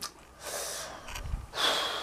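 A person breathing audibly close to the microphone: two noisy breaths, about half a second in and again near the end.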